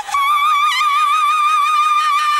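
A woman singing live: after a brief break at the start she jumps up to one very high note and holds it steadily, with little vibrato.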